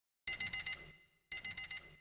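An electronic alarm clock beeping in two quick bursts of about five beeps each, a second apart.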